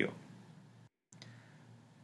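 Near silence: faint recording hiss after the narrator's voice trails off, broken briefly by a dead-silent gap about a second in, where the audio was cut.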